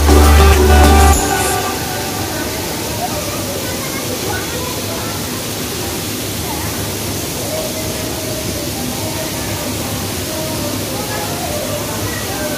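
Bass-heavy electronic dance music cuts off suddenly about a second in. A steady rush of water follows: an artificial waterfall pouring down a sculpted rock face, with crowd voices murmuring.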